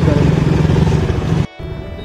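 Motorcycle engine running steadily at low revs amid street traffic noise, cut off abruptly about one and a half seconds in, followed by quieter background music.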